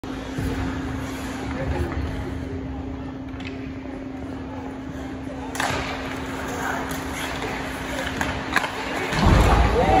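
Ice hockey play: sharp clacks of sticks and puck, with the loudest bang against the boards about halfway through, over a steady low hum. Voices rise near the end.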